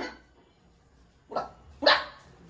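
Three short dog-like barks from a man imitating a dog, one at the start, one just past halfway and one near the end.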